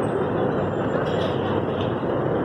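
Steady outdoor street ambience: a continuous, even rushing noise with no distinct events.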